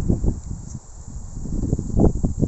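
Wind buffeting the microphone: an irregular low rumble in uneven gusts.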